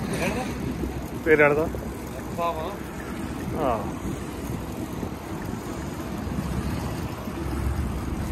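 Steady wind noise on the microphone of a moving bicycle, growing a little louder near the end, with three short snatches of a rider's voice in the first four seconds.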